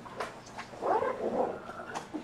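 A single click near the start, then an indistinct, wordless murmur of a person's voice about a second in.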